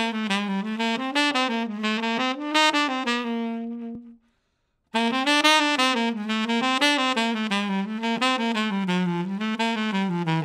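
Solo saxophone playing fast jazz eighth-note lines of scale runs with chromatic approach notes, articulated with a mix of tongued and slurred notes. The first line ends on a held note about four seconds in, and after a short silence a second line of running eighth notes begins.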